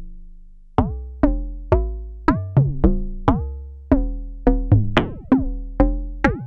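Electronic 'bongo' from a Eurorack modular synthesizer: a frequency-modulated Dual Prismatic Oscillator struck through an Optomix low-pass gate, giving a run of sharp pitched hits, about two a second at uneven spacing. Each hit has a quick pitch drop at the start and rings briefly before it decays. The pitch changes from hit to hit as stepped random voltage from the Wogglebug retunes the oscillator.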